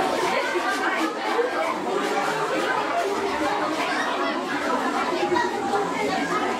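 Many children chattering at once in a large canteen hall: a steady babble of overlapping voices.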